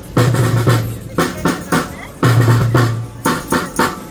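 Marching snare drums beaten in a steady rhythm, about three strokes a second.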